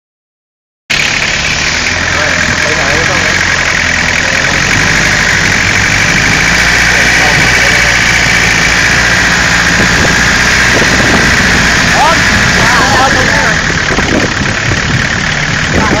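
Exposed engine of an open-frame vehicle running steadily, heard close up as the vehicle drives, with a steady hiss over it. The sound cuts in about a second in.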